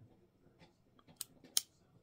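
Lip plumping pen being pumped: a few faint clicks, then two sharp clicks about a third of a second apart in the second half as the pen's click mechanism pushes up the product.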